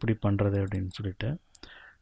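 A man's voice speaking for the first second and a half, then a single sharp click near the end, a computer mouse button being clicked.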